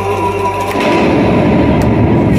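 Loud stage sound system in a break in the dance music: a steady low hum that stops just before a second in, followed by a dense rumbling noise.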